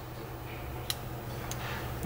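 Two faint clicks of small fly-tying pliers being handled, one about a second in and a smaller one half a second later, over a steady low hum.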